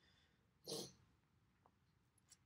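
Near silence, broken once a little under a second in by a short, soft breath close to the microphone.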